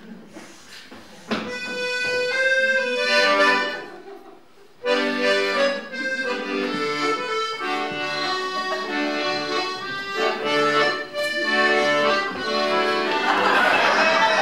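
Piano accordion playing a tune, starting about a second in, breaking off briefly near the middle, then playing on steadily.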